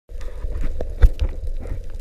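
Underwater sound picked up through a waterproof camera housing: a steady low rumble and faint hum with irregular sharp clicks and knocks, the loudest knock about a second in.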